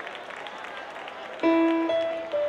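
Audience applauding, then about one and a half seconds in an electric keyboard comes in over the clapping with a loud held note.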